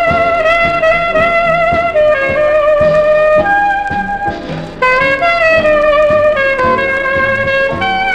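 Alto saxophone playing a jazz dance-band melody in held notes with vibrato over a rhythm section, from an old 78 rpm acetate disc recording.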